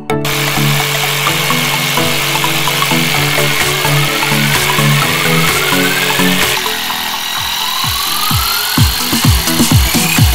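Electronic music with a steady beat over a Black & Decker jigsaw cutting plywood, its blade giving a continuous buzzing hiss. In the second half the music builds with sweeping, gliding tones.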